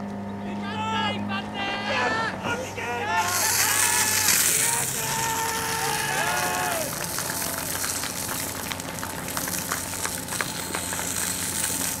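A fire hose nozzle jets water with a steady hiss from about three seconds in. Under it runs the low, steady drone of a portable fire pump engine, and voices call out in the first few seconds and again midway.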